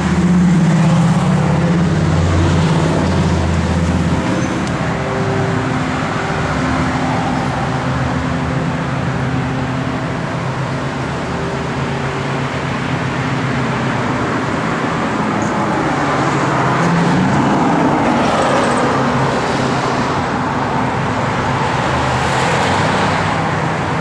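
1970 Dodge Charger R/T's 440 cubic-inch V8, with headers and Flowmaster dual exhaust, idling steadily. It is louder for the first few seconds.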